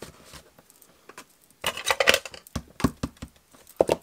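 Stiff cardstock being handled and folded by hand. It is faint at first, then from about halfway through comes a run of crinkles and sharp little taps.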